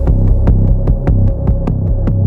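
Background music with heavy, deep bass notes and a fast ticking beat over a steady held tone.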